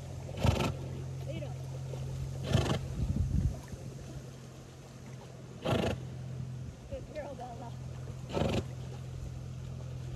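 A swimming horse blowing out hard, loud breaths, four forceful exhalations spaced about two to three seconds apart, over a steady low hum.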